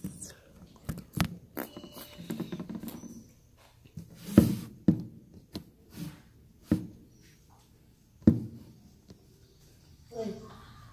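Handling noise on a phone's microphone: irregular knocks, taps and rubs as the phone is moved and set in place, with a sharper thump about four seconds in and two more near the end.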